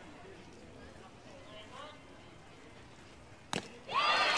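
A baseball fastball popping into the catcher's leather mitt once, sharp and brief, about three and a half seconds in, on a swinging strike three. Faint crowd voices sit beneath it.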